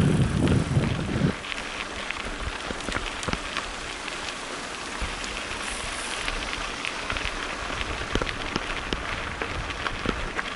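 Mountain bike tyres rolling over a loose gravel track: a steady crunching hiss, dotted with many small clicks and rattles of stones and the bike. A loud low rumble for about the first second.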